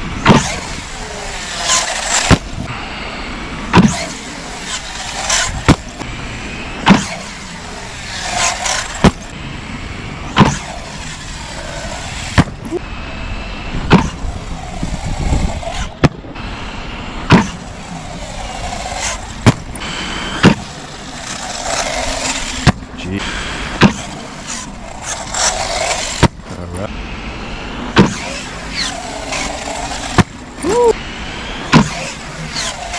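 Brushless electric motors of 6S RC stunt trucks whining up and down in pitch as they accelerate and let off. Sharp thuds from landings and tumbles come every second or two.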